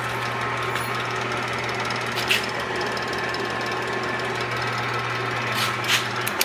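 A 36-volt golf cart DC motor, jumpered to a single field winding and run off a 12-volt jump box, humming steadily as it turns the motorcycle's shaft drive, with a dense rattle under the hum. Two sharp clicks come about two seconds in and near the end.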